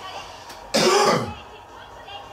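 A person's short vocal sound, about half a second long and falling steeply in pitch, a little under a second in.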